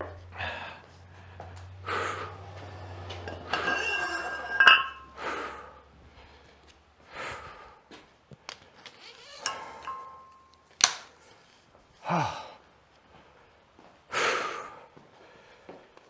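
Metal weight plates and a barbell clinking and knocking as weight is loaded, with a man's heavy breathing between. The loudest is a ringing metal clink about four and a half seconds in; a sharp knock comes near eleven seconds.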